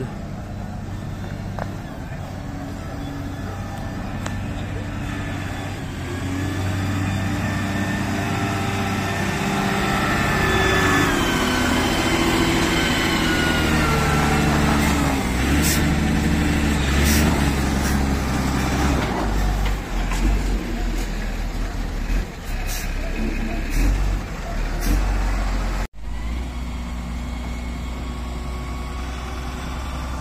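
Diesel engine of an XCMG LW300KV wheel loader running and revving up and down as it works, with a heavy truck's engine alongside.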